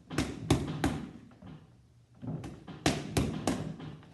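Boxing gloves and focus mitts smacking together in quick strikes: a run of three, a lull of about a second and a half, then four more. This is a block-and-counter drill, each block followed by a counter combination into the mitts.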